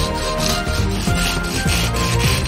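Fine-toothed hand saw cutting through a thin bamboo stick, with quick repeated rasping strokes about two or three times a second, over background music.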